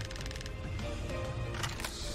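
Online slot game's background music, moderately quiet, with a brief run of rapid ticks near the start as the reels spin in free spins.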